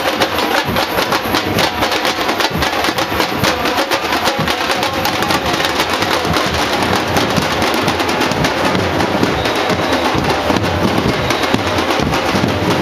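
A percussion group drumming a fast, dense rhythm at a steady loudness.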